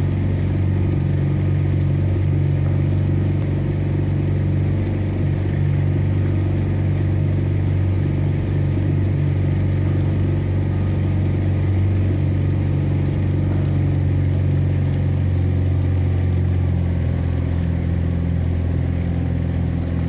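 Outboard motor of a coach launch running steadily at cruising speed: a constant low drone that does not change.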